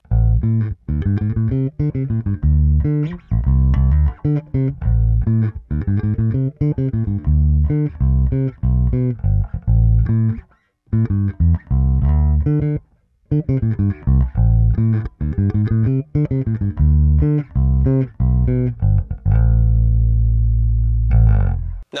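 Harley Benton MV-4MSB short-scale electric bass played fingerstyle, its neck P and bridge J pickups wired in series with the tone fully open, recorded direct without effects. It plays a line of plucked notes with two brief breaks, ending on a long held low note that cuts off abruptly just before the end.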